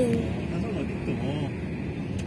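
Steady road and engine noise inside a moving taxi, with a voice talking quietly over it.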